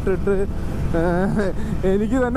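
A man talking while riding a motorcycle, with a steady low rumble of wind and the motorcycle underneath his voice.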